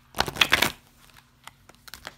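Oracle cards being riffle-shuffled: one quick burst of cards flicking together, about half a second long, near the start, followed by a few faint taps of the cards being handled.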